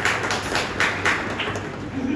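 A few people clapping their hands in short, uneven, scattered claps that thin out after about a second and a half.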